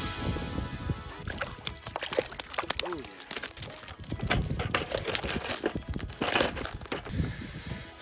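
Irregular clicks, knocks and crunches of handling at the edge of an ice-fishing hole, with boots on crusted ice.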